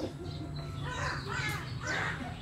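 A bird giving a quick run of harsh, caw-like calls in the second half, over a steady low background hum.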